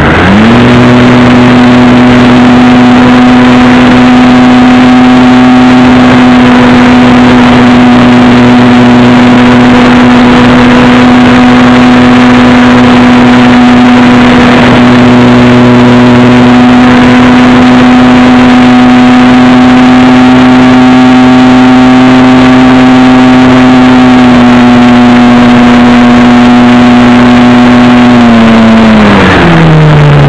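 Loud onboard sound of an RC model airplane's motor and propeller opening up to full throttle right at the start for takeoff, then holding one steady high pitch. Near the end it throttles back and the pitch falls.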